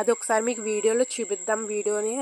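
A person's voice in short, drawn-out, sing-song syllables that the words cannot be made out of, over a constant thin high-pitched whine.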